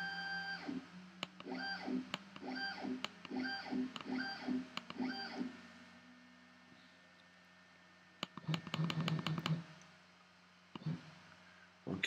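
X-Carve CNC router's Z-axis stepper motor jogging the bit upward in a series of short 0.1-inch moves. Each move is a brief whine that rises and falls in pitch, about two a second, over the first five seconds or so.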